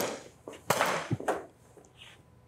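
Two sharp pops of training pistols firing in quick succession, echoing in a large room, with a shout of "down".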